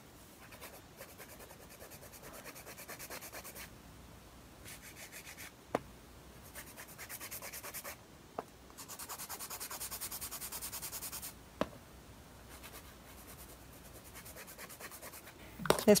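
Hand nail file rasping on a dip-powder nail in quick back-and-forth strokes, about six a second, in runs of a few seconds with short pauses between. A few light clicks fall between the runs.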